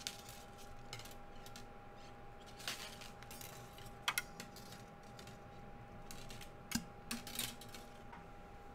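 20-gauge half-round sterling silver wire being coiled by hand around square silver wire: faint scattered scraping rustles and small metallic clicks as the wire is pulled through and around, with a few sharper clicks.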